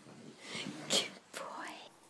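A hushed, breathy voice with a short, sharp burst about a second in.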